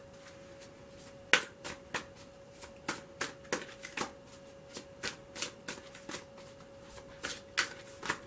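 A tarot deck being shuffled by hand, cards slapping and snapping against each other in a string of irregular sharp clicks, two or three a second, starting about a second in.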